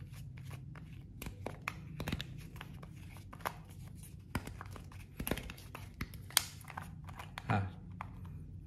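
Plastic shrink-wrap seal being picked at and torn off the neck of a small plastic e-liquid bottle: irregular crackles and sharp clicks of the film, the loudest a little after five seconds in and again past six seconds, before the screw cap comes off near the end.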